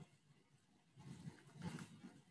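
Near silence, broken about a second in by a brief noise lasting under a second.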